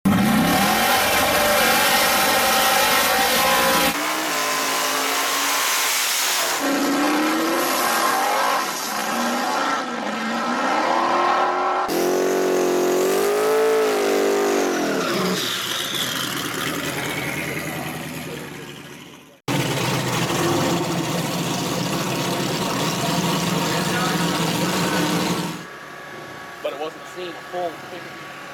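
Drag cars' engines revving hard, with burnout tire noise, in several separate stretches that change abruptly about four, twelve and nineteen seconds in. Around twelve to sixteen seconds the engine pitch wavers up and down.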